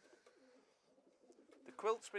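Faint cooing of racing pigeons, a soft wavering murmur in the background.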